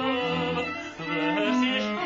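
A male cantor singing a liturgical melody in long held notes, with bowed strings accompanying; the sound dips briefly about halfway between phrases.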